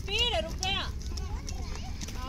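High-pitched voices calling out, with pitch rising and falling, strongest in the first second. Beneath them runs a steady low rumble of inline skate wheels rolling on concrete.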